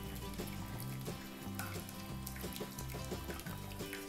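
Quiet background music with a slow bass line that moves from note to note.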